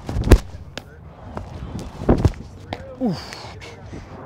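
Baseball pitches smacking into catchers' mitts: two sharp pops about two seconds apart, the first the louder.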